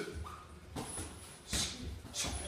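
Boxing shoes squeaking briefly on the ring canvas during sparring, then two short, sharp hits as punches land, the louder one about a second and a half in.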